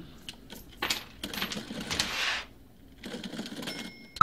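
Coins clinking one after another as payment is counted out, a series of light separate clicks, with a rustling noise about a second and a half in.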